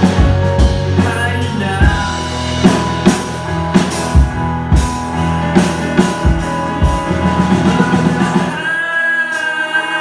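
Live rock band playing: drum kit, electric bass, electric guitar and keyboards, with singing. About eight and a half seconds in, the drums and bass drop out, leaving guitar, keys and voice.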